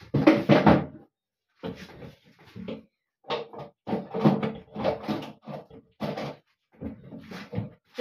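Irregular knocks and rustles of objects being handled in a small tiled room. The loudest burst comes in the first second, followed by a string of shorter bursts with silent gaps between them.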